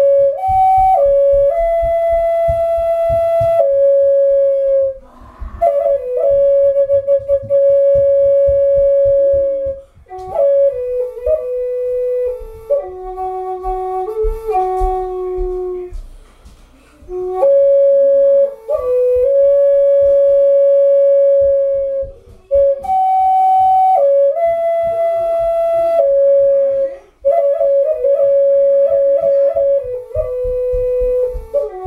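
Six-hole Native American flute in F# with a 7/8-inch bore playing a slow melody of long held notes with short ornamental turns, in phrases broken by brief pauses for breath.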